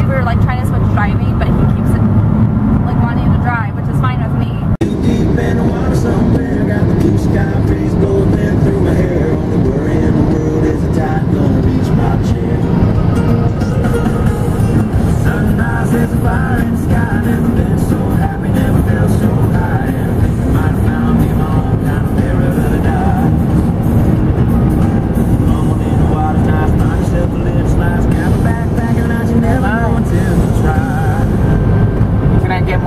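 A song with singing plays over steady car road noise. A cut about five seconds in leaves the music and road noise running on.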